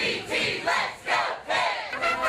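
Cheerleaders shouting a cheer in unison, a rhythmic chant of short shouts about two a second.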